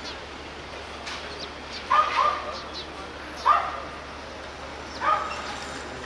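A dog barking off-camera, loud and close: a quick double bark about two seconds in, then two single barks about a second and a half apart, over steady street noise.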